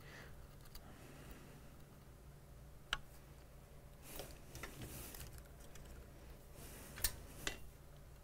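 Faint sounds of a soldering iron working flux and solder on a logic board: two sharp ticks, about three and seven seconds in, and a few soft hissing stretches, over a low steady hum.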